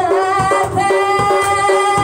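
A man singing a devotional song, accompanied by held harmonium chords and steady hand strokes on a dholak drum.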